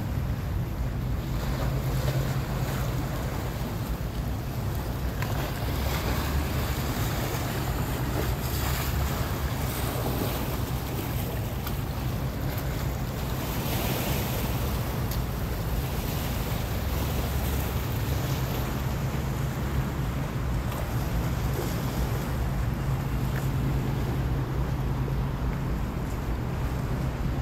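Wind on the microphone and sea water washing against a rock seawall, over a steady low hum that fades in the middle and comes back in the second half.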